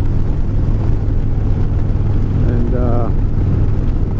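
Cruiser motorcycle riding at road speed: steady low rumble of the engine mixed with wind noise on the microphone.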